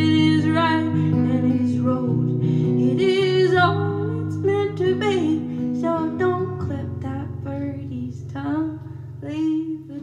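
Woman singing a sustained melody while accompanying herself on an acoustic guitar, the music getting softer about two-thirds of the way through.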